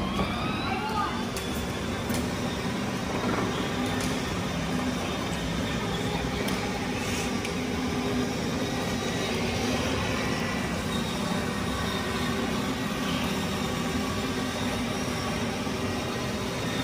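Children's battery-powered ride-on toy cars driving on concrete: a steady electric-motor whir with the plastic wheels rolling.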